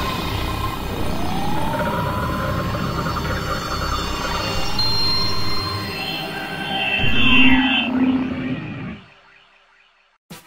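Cinematic logo-intro sound design: swooping sweeps that rise and fall in pitch over a low rumble, swelling louder about seven seconds in, then fading out about nine seconds in.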